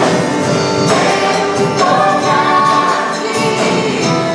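Live gospel worship song: a group of women singing together, backed by a band with drums and keyboard.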